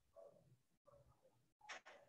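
Near silence: room tone with a few faint short tones and a brief soft scratch near the end.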